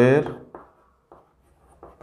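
Chalk writing on a blackboard: a few short, faint scratches and taps of the chalk stick, after a man's spoken word trails off at the start.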